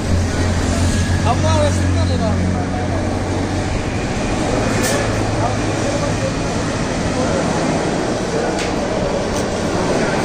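A low, steady motor hum, strongest in the first few seconds and then fading, over a constant background of noise and indistinct voices.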